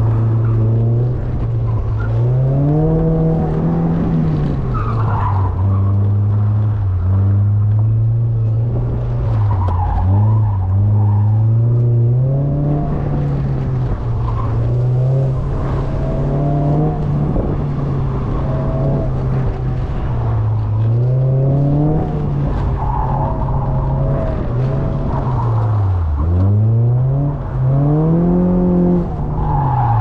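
Mazda MX-5's four-cylinder engine, heard from inside the open-top cabin, revving up and falling back again and again through short bursts of acceleration, lifts and gear changes, with the revs dropping sharply twice near the end. Tyres skid on the wet surface as the car is thrown and handbraked around the course.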